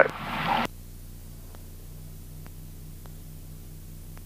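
Light single-engine aircraft's piston engine and propeller heard faintly through the cockpit intercom as a steady low hum with a slight pulse. A brief hiss cuts off just under a second in.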